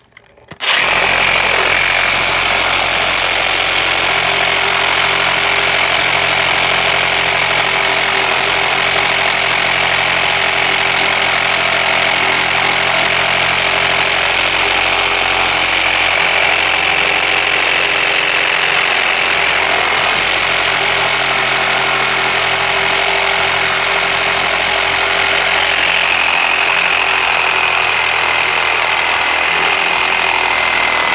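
DeWalt cordless reciprocating saw fitted with a Milwaukee Torch blade, cutting into the plastic case of a DeWalt 20V battery. It starts about half a second in and runs steadily without a break, loud, with a steady high whine over the rasp of the blade.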